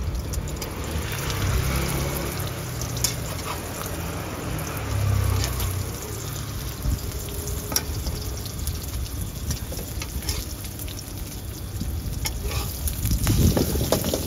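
Beaten egg deep-frying in hot oil in a wok, sizzling steadily with scattered crackles and spatters. A low rumble runs underneath. Near the end a metal spatula works the omelette and the sound briefly grows louder.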